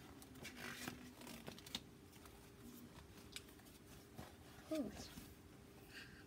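Faint rustling and soft clicks of a paper picture book's pages being handled and turned, with a child's brief "ooh" near the end.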